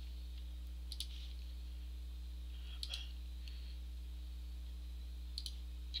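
Light clicks of a computer mouse, three quick pairs a couple of seconds apart, placing sketch rectangles in CAD software, over a steady low electrical hum.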